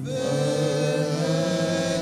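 Congregation singing a hymn slowly, voices holding long notes through one phrase that begins at the start and breaks off at the very end.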